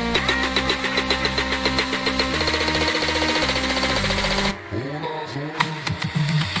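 Bass-boosted electronic club music: a fast repeating pulse over sustained deep bass notes that step down in pitch. About four and a half seconds in, the deep bass drops out and sweeping tones build toward the next section.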